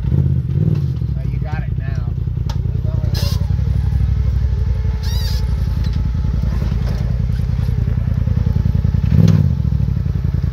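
Polaris RZR side-by-side's engine running steadily at low revs as it crawls over rock obstacles, with a short rise in revs about nine seconds in.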